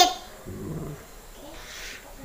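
A young girl's high-pitched voice finishing a word, then a short, low hum from a man's voice about half a second in, and a faint breathy rustle near the end.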